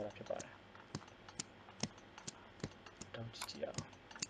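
Computer mouse button clicking: a series of single sharp clicks at uneven intervals, roughly two a second.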